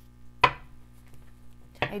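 One sharp knock on the tabletop about half a second in, with a lighter knock near the end, as oracle cards are handled.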